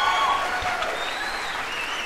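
Beef burgers frying in a hot pan: a steady sizzling hiss, with a few thin, steady high tones over it.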